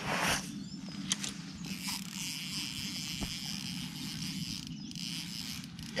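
A brief rustle at the start, then a steady high insect buzz over a low, even hum, with a couple of faint clicks.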